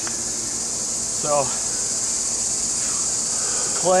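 Steady, high-pitched drone of insects, holding one even pitch.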